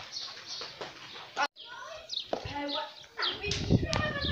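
Small birds chirping in short, quick notes. The sound drops out for a moment about halfway through, and a man's voice starts calling near the end.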